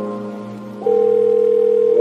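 Electronic background music of sustained held notes; a little under halfway through, a loud steady tone comes in over them.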